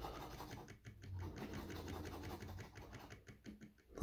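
A large coin scraping the coating off a paper scratch-off lottery ticket in rapid, faint strokes that fade out near the end.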